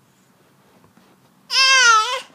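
A baby gives one loud, high-pitched squeal about a second and a half in, held steady for under a second.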